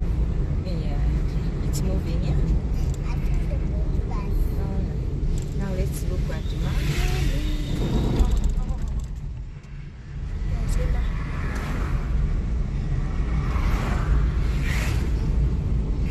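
Car driving on a paved road, heard from inside the cabin: a steady low engine and tyre rumble that dips briefly about ten seconds in.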